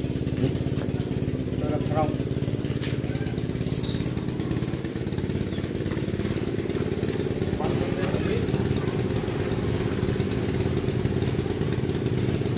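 A small engine running steadily at an even speed.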